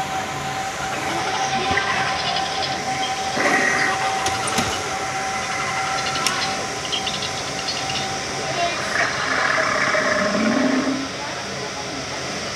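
Indoor shop ambience: indistinct voices over a constant background noise, with a thin steady high tone that stops about three-quarters of the way through.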